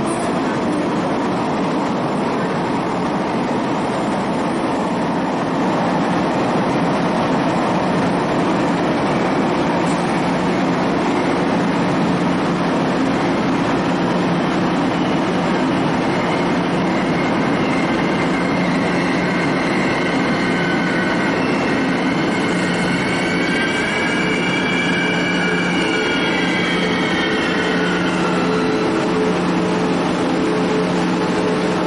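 Diesel-electric locomotive R117 of a Chu-Kuang express train running with a steady engine drone, with wavering high metallic squeals joining in about two-thirds of the way through.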